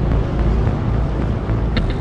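Motor boat's engine running with a steady low rumble, mixed with the wash of water along the moving hull.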